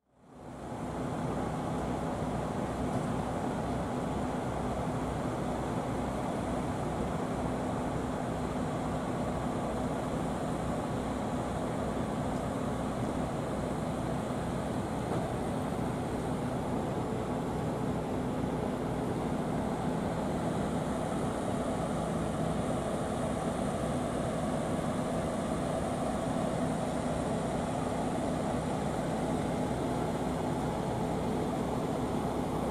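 Steady low mechanical drone with a few held low tones, from the berthed ferry's engines and machinery, unchanging throughout; it fades in over the first second.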